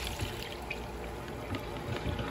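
Noodle cooking water poured from a plastic bowl into a plastic colander, running out through its slots as the noodles are strained: a steady, fairly quiet pouring stream.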